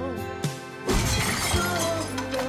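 Glass bottle smashed over a man's head: a sharp hit about half a second in, then glass shattering for about half a second. Background music plays throughout.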